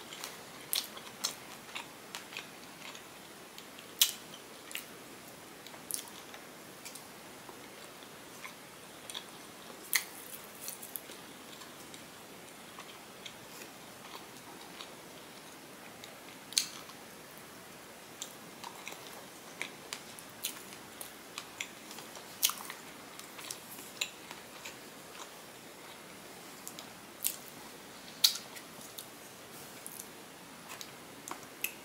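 Close-up chewing of a mouthful of lemon ricotta pancake with fresh strawberries, with sharp mouth clicks and smacks every second or two.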